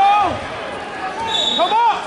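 Wrestling shoes squeaking on the mat as the wrestlers scramble: short, quick squeaks rising and falling in pitch, a few right at the start and a cluster of them near the end.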